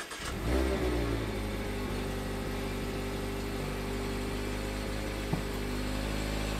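The 2022 Mazda MX-5's 1.5-litre four-cylinder engine just after starting: the revs rise briefly in the first second, then settle into a steady idle. A single short click comes near the end.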